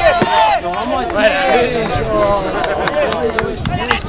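Several rugby players shouting and calling to one another across the pitch, their voices overlapping. A few short, sharp knocks come through in the second half.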